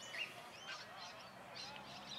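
Birds calling: a run of short, high chirps, faint against the open-air background.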